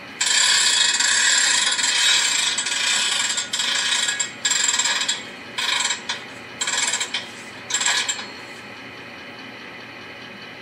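Sound effect of a railcar hand brake being wound on: a ratcheting clatter for about three and a half seconds, then five short bursts of ratcheting, then it stops.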